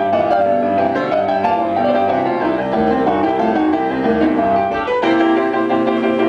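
Boogie-woogie piano played live with a band of upright bass and drums; the music shifts to a new figure about five seconds in.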